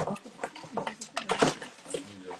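Paper rustling and crinkling in irregular crackles as paper slips and a paper gift bag are handled.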